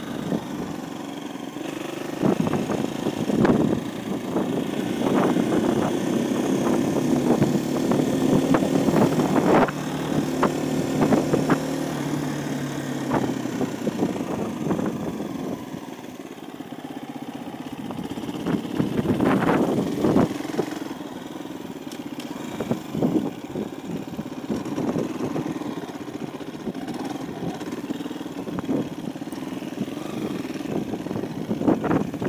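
KTM 350 EXC-F single-cylinder four-stroke engine running at low speed, its pitch rising and falling with the throttle. Short sharp knocks are scattered through it.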